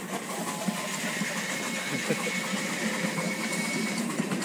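Ride-on miniature train moving along its track: a steady engine-and-running noise, with a faint high whine joining about a second in.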